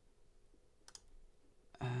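Quiet room tone broken by a single short, sharp click about a second in.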